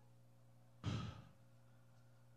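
A man's single short breath or sigh into the microphone about a second in, taken in a pause between phrases. Otherwise quiet, with a faint steady low hum.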